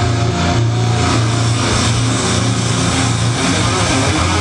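Live heavy metal band played loud: distorted electric guitars and bass holding low chords that change every second or so.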